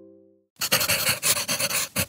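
A plucked guitar chord dying away, then after a short gap a fast run of scratchy noise pulses, about eight a second, with a brief break near the end.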